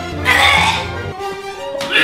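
A man gagging and retching with loud throaty heaves, twice, over background music whose low bass line stops about halfway.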